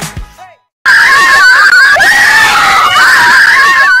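Loud, high-pitched screaming held for about three seconds, starting just under a second in after a short gap of silence as background music cuts off.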